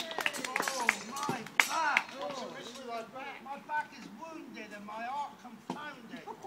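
Indistinct voices, with a few sharp knocks or claps in the first two seconds.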